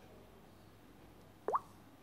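A single short, rising 'bloop' user-interface sound from the documentary app about one and a half seconds in, as its menu comes up. Faint steady background hum underneath.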